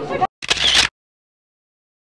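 A single camera-shutter click lasting about half a second, near the start, followed by dead silence.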